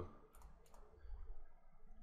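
A few faint computer mouse clicks in the first second.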